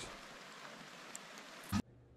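Steady rain falling, an even soft hiss that cuts off abruptly near the end.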